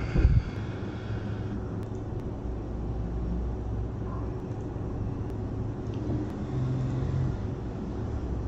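A low, steady rumble like distant road traffic, with a short thump right at the start.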